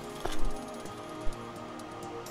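Background music with steady held tones, with two short, sharp, loud sounds over it, the first about a quarter of a second in and a shorter one just past a second.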